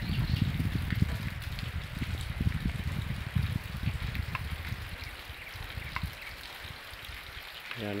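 Steady rain falling on trees and roofs, a constant hiss with a few faint drip ticks. A low rumble in the first half fades away.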